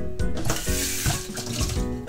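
Kitchen tap running as a stainless steel saucepan is quickly rinsed at the sink, a burst of water hiss lasting about a second.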